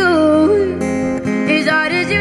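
Female voice singing a gliding, wavering melodic run over strummed acoustic guitar.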